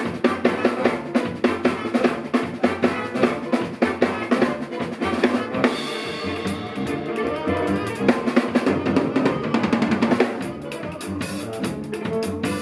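A live band plays an instrumental passage: a drum kit drives a busy beat under electric guitar and bass. About six seconds in, the drumming thins out and the held notes come forward, then the drums pick up again near the end.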